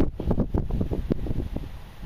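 Wind buffeting the microphone: an irregular low rumble with crackles, loudest at the very start.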